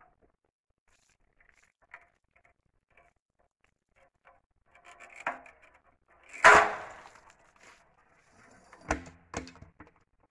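Plastic bucket hoisted on construction twine over a homemade PVC pulley drops when the twine's granny knot gives way, hitting the ground with a loud crash about six and a half seconds in. Faint clicks come as the cord is hauled beforehand, and two sharper knocks come near the end.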